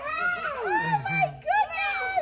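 Young children's high-pitched voices calling out, several arching rises and falls in pitch, without clear words.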